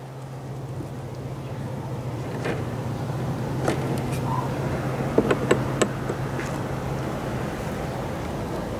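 A hive tool prying at wooden beehive frames, with the frames clicking and knocking as they are shifted in the box; there are a few scattered clicks and then a quick cluster about five seconds in. A steady low hum sounds throughout.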